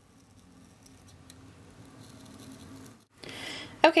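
Small craft paper snips faintly cutting card stock, with a few soft clicks of the blades. A brief rustle follows near the end.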